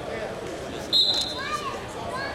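Wrestling shoes stepping and shuffling on the mat, with one short, high squeak about a second in, followed by a shouting spectator's voice over the gym's crowd noise.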